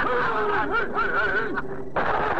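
Cartoon voices snickering and laughing, the sound thinning out shortly before the end.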